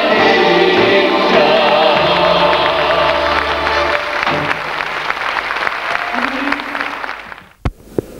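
A Bulgarian folk band of clarinet and accordion, with a man and a woman singing, finishes a song in the first second or so. Audience applause follows. Near the end the sound drops away and there is one sharp click at an edit cut.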